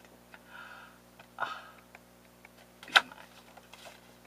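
Quiet handling of stiff paper greeting cards, with a few faint ticks and one sharp click about three seconds in. A soft breathy 'oh' comes early on.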